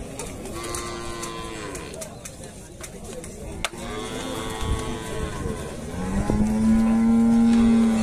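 Cattle mooing: three long, steady moos, the last and loudest starting about six seconds in.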